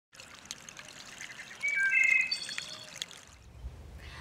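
Water trickling and gurgling, with small splashy clicks and brief ringing tones. It swells in the middle and dies away shortly before the end.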